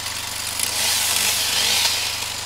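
A distant chainsaw cutting wood, a rasping that swells about half a second in and eases near the end, over the steady idle of a truck engine.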